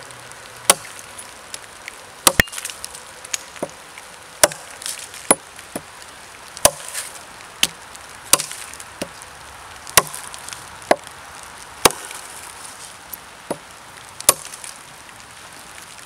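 Unsharpened CRKT Ma-Chete blade of 1075 steel chopping into a dead log, with about eighteen sharp chops spaced unevenly, roughly one or two a second.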